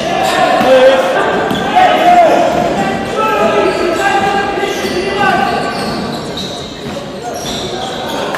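Basketball game sounds in a gym: a ball bouncing on the wooden court and players calling out, echoing in a large hall.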